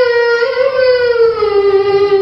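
A boy's voice chanting one long held note through a microphone, sliding down in pitch about half a second in and settling on a lower note.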